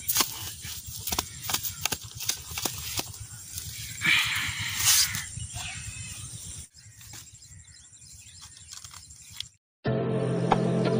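A hand hoe chopping and scraping into damp soil in repeated sharp strikes, with a longer scrape about four seconds in. The earth is being cut to build up a paddy field's bund before it is watered. The strikes die away after about six seconds.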